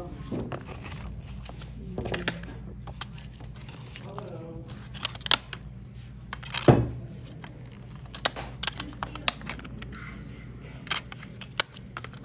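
Handling of a fold-out DVD box set: a string of plastic clicks and taps and paper rustles from the disc trays and booklet. A heavier thump comes a little past the middle, all over a low steady hum.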